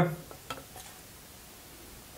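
Marinated onion half-rings dropped by hand into a glass blender cup: a faint light click about half a second in and a few soft ticks, otherwise quiet.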